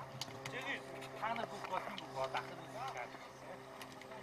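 Field sound from a soccer match: players and onlookers shouting short calls, several of them in the middle seconds, over a steady low hum. A few sharp knocks are mixed in.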